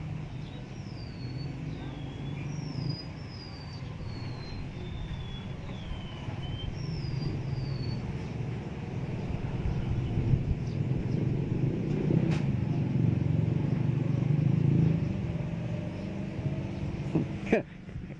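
Steady rumble of road traffic passing outside, growing louder in the second half as vehicles go by. A bird makes about ten short, high, falling chirps during the first eight seconds.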